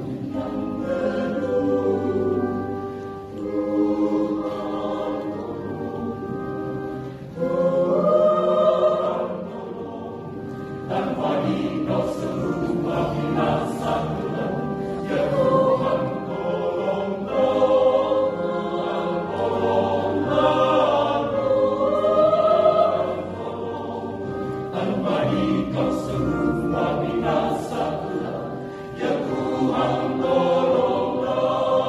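Mixed adult choir of men's and women's voices singing in parts, accompanied on an electronic keyboard, in long sustained phrases that swell and fall.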